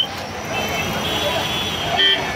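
Busy street noise from a crowd gathered on a road: many voices talking at once over passing traffic.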